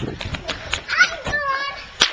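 Quick running footsteps on pavement, with a child's high-pitched voice calling out, rising and falling, about a second in.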